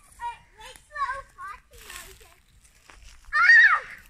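Young children's high-pitched wordless calls, ending in a loud high squeal about three and a half seconds in.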